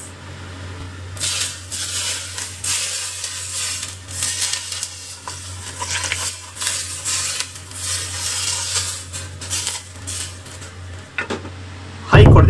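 Hot sesame oil poured onto shredded scallions and ginger on a steamed fish, sizzling and crackling in several surges starting about a second in. A steady low hum runs underneath.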